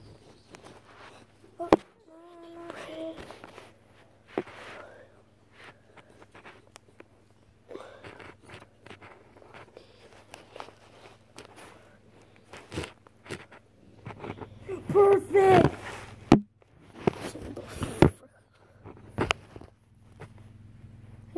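Rustling and scattered knocks from movement and phone handling. Faint voice sounds are heard, with a louder burst of a child's voice about 15 seconds in.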